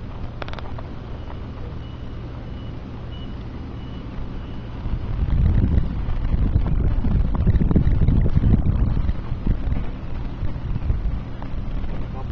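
Steady low engine hum with wind buffeting the microphone in loud low rumbles from about five seconds in. A faint repeated high beep sounds in the first few seconds.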